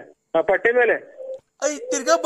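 Speech over a telephone line in a recorded phone call: short phrases broken by brief gaps.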